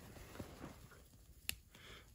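Faint rustling of a cotton bandana being handled, with a single sharp click about one and a half seconds in.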